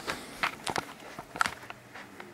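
Footsteps: a few irregular steps while a handheld camera is carried, with light handling knocks.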